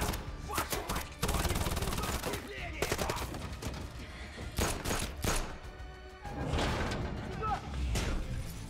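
Film gunfire during an attack on an armoured van: a rapid burst of shots lasting about a second, starting about a second in, then scattered single shots.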